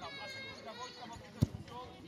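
A football kicked once, a single sharp thump about a second and a half in, amid children's high-pitched shouts.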